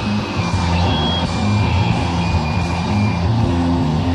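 Live rock band playing a passage of held bass notes with thin high tones above.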